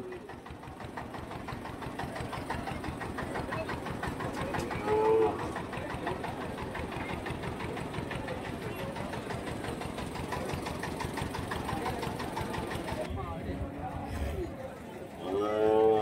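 A truck's diesel engine idling with a fast, even clatter.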